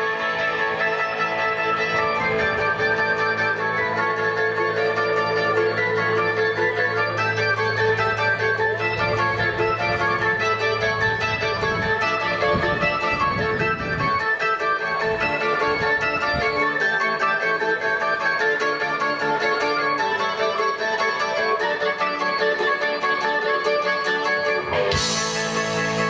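Live band playing an instrumental passage: electric guitar lines over held keyboard and bass notes, with no singing. A steady low bass note holds for the first half, then drops away.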